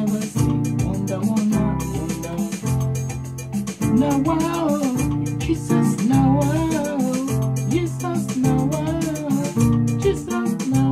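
Yamaha PSR arranger keyboard playing a highlife groove in F: chords played by both hands over the keyboard's African-style rhythm accompaniment, with guitar-like parts and a steady beat.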